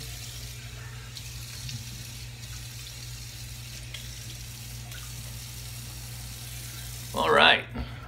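Tap water running steadily into a sink while a man wets his face before a shave; the water stops about seven seconds in, when a man's voice comes in.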